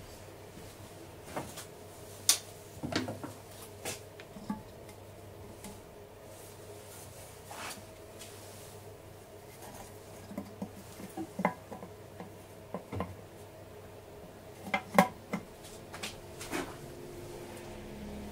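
Metal air-filter housing of a Trabant 601 engine being handled and fitted: scattered knocks and clicks, the sharpest about two seconds in and a cluster a few seconds before the end, over a faint steady hum.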